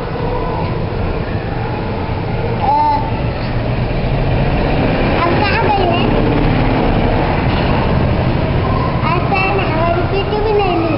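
Indistinct children's voices chattering in the background over a steady low rumble.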